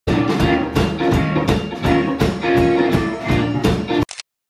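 Live blues band playing: electric guitars over a drum kit keeping a steady beat, about four hits a second. The music starts abruptly and stops abruptly.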